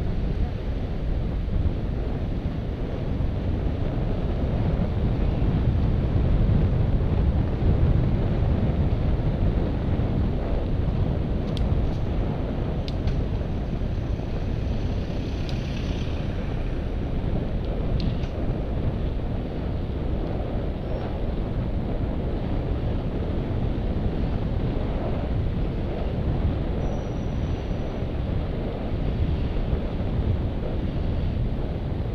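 Wind buffeting the microphone of a camera on a moving bicycle: a steady low rumble that is a little louder in the first third, with a few faint clicks in the middle.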